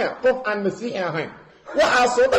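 A man's voice chuckling with short laughs, fading away about a second and a half in.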